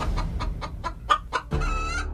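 A chicken clucking in a quick run of short notes, then one longer rising call about one and a half seconds in.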